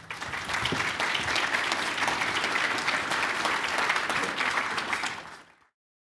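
Audience applauding, fading out near the end.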